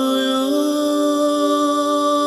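Meditation music: a long held chanted vocal note, steady, stepping up slightly in pitch about half a second in.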